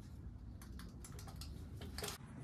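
Faint, irregular light clicks and taps, a few each second: handling noise from someone working at the raised car.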